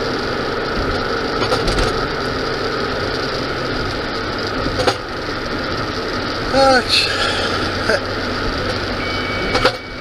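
Steady road and engine noise heard from inside a moving car's cabin, with a brief voice sound about two-thirds of the way through.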